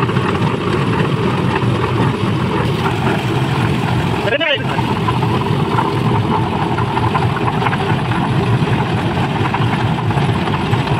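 Portable drum concrete mixer's engine running steadily with the drum turning, while the drum is tipped to discharge a batch of wet concrete. A short wavering high sound cuts through about halfway.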